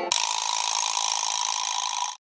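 Film projector sound effect running steadily, starting suddenly as the music ends.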